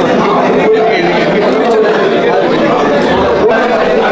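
Chatter of a crowd, many voices talking at once with no one speaker standing out.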